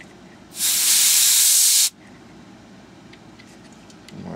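A jet of air hissing in one burst of about a second and a half, starting and stopping sharply. It is blown at the NTC thermistor of a MOSFET airflow sensor to cool it.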